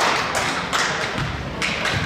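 Basketball bouncing on a hardwood gym floor, several thuds about a third to half a second apart, with echo from the hall.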